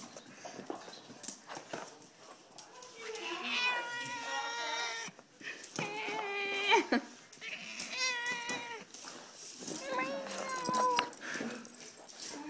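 A domestic cat meows about four times, each meow long and drawn out, in protest at being petted. Faint rustling and handling clicks come between the meows.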